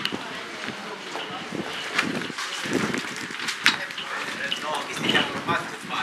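Indistinct voices of people talking in the background, with sharp clicks about two seconds in and again just past the middle.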